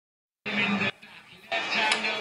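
Cricket broadcast sound playing from a television: a voice over music, starting suddenly about half a second in, dropping away briefly, then coming back loud.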